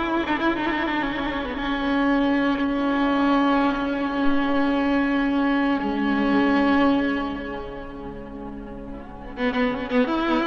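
Solo violin playing slow, long-held notes in the Persian dastgah Shur, sliding between pitches, with the phrase fading a little before a new one begins near the end.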